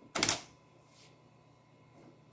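A floppy disk is pushed into a PowerMac 8100's floppy drive and taken in by the mechanism, a short clatter as it seats, followed by a faint click about a second in.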